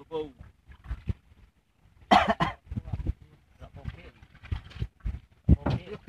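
Indistinct voices in short bursts, loudest about two seconds in.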